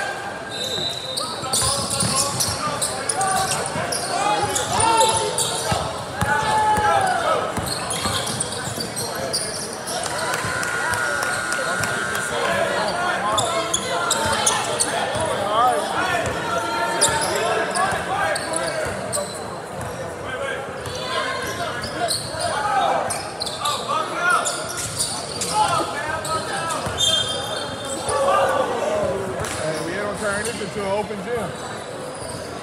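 A basketball being dribbled and bouncing on a hardwood gym floor during a game, under steady indistinct chatter and calls from players and spectators.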